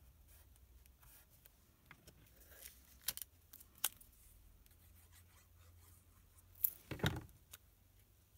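Paper crafting at a work surface: cardstock pieces being handled, glued and pressed down, with a liquid glue bottle in use. A few sharp clicks come about three and four seconds in, and a louder knock with a rustle comes about seven seconds in.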